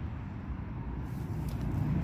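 Low, steady outdoor background rumble, with a few faint ticks about halfway through.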